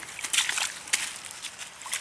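German Shepherd puppy splashing in a shallow muddy puddle, with a few irregular wet sloshes as its muzzle and paws churn the water and mud.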